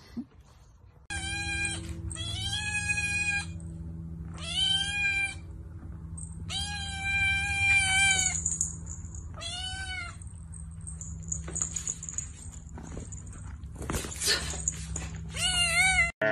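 A tabby kitten meowing over and over: about six drawn-out, high-pitched meows, each rising and falling in pitch, with a steady low hum beneath.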